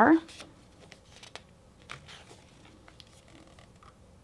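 Faint paper rustles and flicks as the pages of a hardcover journal, thickened with pasted photos and stickers, are turned by hand.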